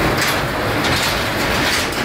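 Handling noise: the phone's microphone rubbing and brushing against fleece clothing as it is moved about, a steady rough rustle.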